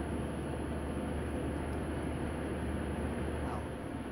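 Steady background noise: an even hiss with a low hum beneath it, and no distinct event.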